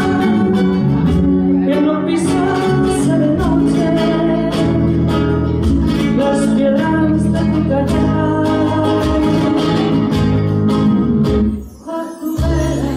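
Live band performance of a Spanish song: a woman singing over acoustic guitar with a steady beat. The music drops away briefly near the end.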